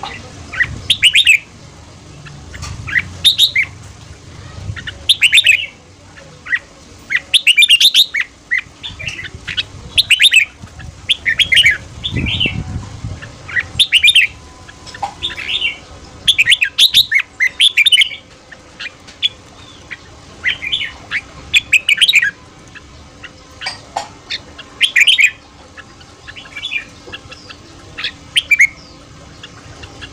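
Red-whiskered bulbul singing: loud, short whistled phrases repeated about every two seconds.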